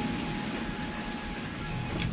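Steady rumbling noise of a frigate under way at sea, with a low machinery hum coming in near the end.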